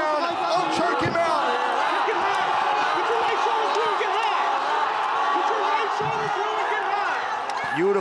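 Several voices shouting over one another without pause, with a thump about a second in.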